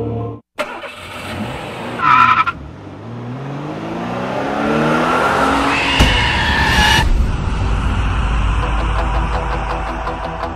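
A car engine revving harder, its pitch climbing as it approaches, with a short sharp squeal about two seconds in. About six seconds in the car passes with a loud tyre squeal, followed by a heavy rumble.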